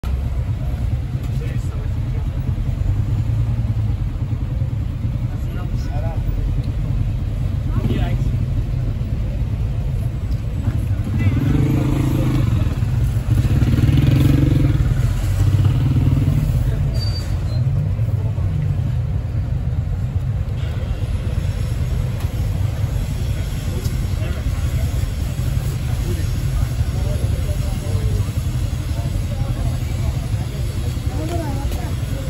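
City street traffic: a steady low rumble of passing engines, swelling for several seconds in the middle as a louder vehicle goes by.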